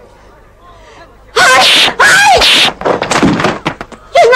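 Loud, high-pitched vocal yells: two long shouts starting about a second and a half in, then a choppy run of shorter sharp sounds, with another shout just at the end.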